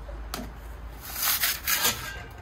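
Metal pizza peel sliding and scraping on the stone floor of a Gozney Roccbox pizza oven as a pizza is launched off it and the peel drawn back. There is a short click about a third of a second in, then about a second of dry scraping.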